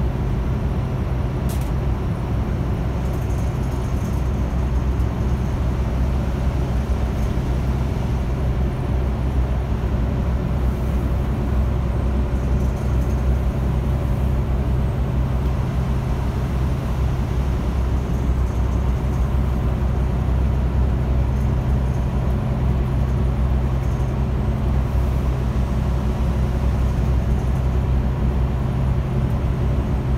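Volvo bus driving along at a steady pace, its engine a constant low drone under road noise, with a single brief click about a second and a half in.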